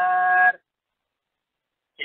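A man's voice chanting, holding one steady note on a drawn-out vowel at the end of a recited Tamil verse line; it cuts off about half a second in.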